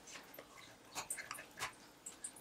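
Bone folder pressed and rubbed along a folded, glued paper edge, making a few faint, short scratchy clicks.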